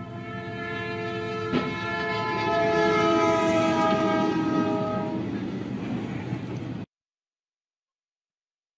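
Freight locomotive air horn blowing one long, loud chord as the train approaches and passes, the chord falling in pitch partway through. A single sharp knock comes about one and a half seconds in, and the sound cuts off suddenly near the end.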